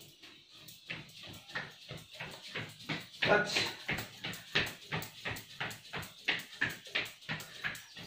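Feet thudding on a thin yoga mat over a hard floor while jogging in place with high knees, an even beat of about three steps a second that grows louder about three seconds in.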